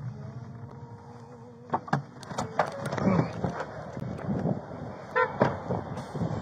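Steady hum inside an idling patrol car, then from about two seconds in a run of clunks and knocks as the deputy climbs out of the car into roadside traffic noise. A short car-horn honk comes about five seconds in.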